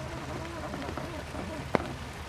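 Rain runoff trickling and splashing down a small waterfall in a hand-dug dirt trench, a steady hiss, with a single sharp click near the end.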